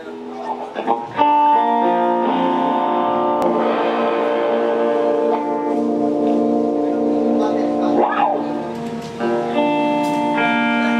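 Electric guitars playing held, ringing chords that open a song live, with the chord changing every few seconds and no drums yet.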